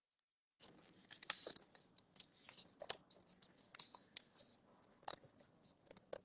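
Faint rustling and crinkling of a sheet of origami paper as hands slide one edge over to a crease and fold it into a triangle. The sound comes in short irregular bursts, starting about half a second in.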